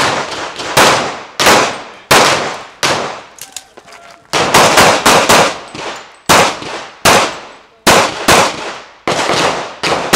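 Semi-automatic pistol fired in a fast string of single shots, about one or two a second, each shot ringing on in echo; the string breaks briefly near four seconds in, then carries on.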